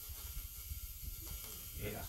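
Quiet room tone: a steady hiss and a low rumble with no guitar notes, then a man's brief "yeah" near the end.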